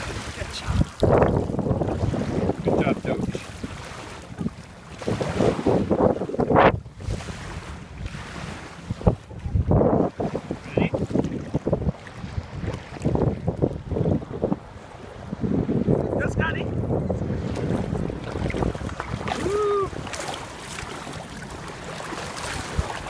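Wind buffeting the microphone over water splashing as people wade through shallow sea water with a swimming dog; the noise comes in irregular gusts and rushes.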